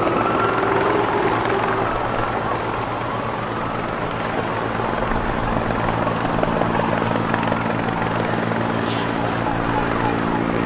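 Helicopter drone, steady, with a low hum that grows stronger in the second half and a high wavering wail that rises and falls in the first few seconds.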